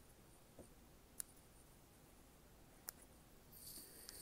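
Near silence broken by a few faint sharp snips, about a second in and again near three seconds: small scissors cutting the quilting threads. A soft rustle comes in near the end.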